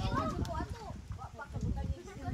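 Indistinct voices talking, with a laugh at the start, over a low rumble.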